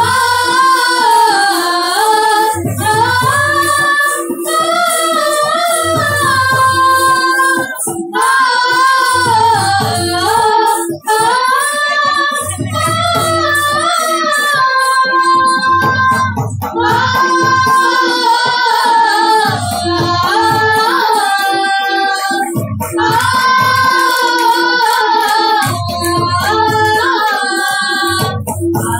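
Sambalpuri folk song: a high voice sings a gliding melody over a repeating drum pattern and crisp high percussion.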